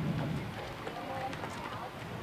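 Indistinct voices talking at a distance, with no clear words, over outdoor background noise.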